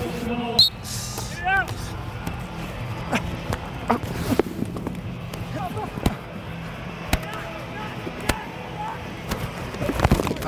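Box lacrosse play heard through a player's body mic: steady arena crowd noise, scattered sharp knocks of sticks and ball, and a short run of squeaks about a second and a half in.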